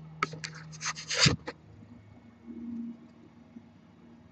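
Handling noise on a laptop's built-in webcam microphone as the laptop is picked up and turned: a quick run of scratches and clicks with a thump just over a second in.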